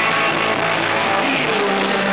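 Live rock band playing, with electric guitars.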